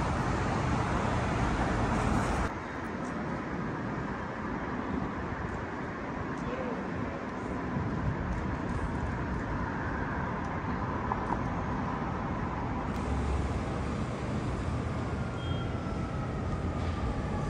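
City street traffic noise, a steady wash of passing cars. It is louder for the first two and a half seconds, then drops suddenly to a lower steady level.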